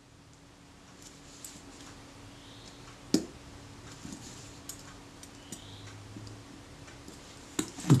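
Small screwdriver tightening the tiny retainer-plate screws on a Synchro-Compur leaf shutter: faint, scattered metallic clicks and light scrapes, with one sharper click a little after three seconds in.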